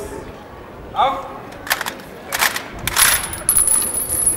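A short shouted drill command, then a ragged clatter of many rifles being brought down from across the body to the side, with sharp metal clicks and knocks over about two seconds.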